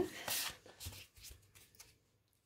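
Tarot cards being shuffled and handled on a cloth: a short papery rush followed by a run of light card flicks and crackles that fade out.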